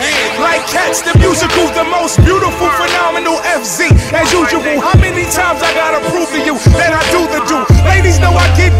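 Hip hop track with rapping over the beat. The deep bass drops out for most of the stretch, leaving kick drum hits about a second apart, and comes back in near the end.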